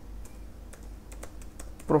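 Computer keyboard typing: a quick, irregular run of keystroke clicks as a word is typed.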